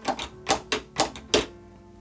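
LEGO Grand Piano's plastic keys and hammer levers pressed by hand, clacking about six times in the first second and a half. The action is plastic and clunky.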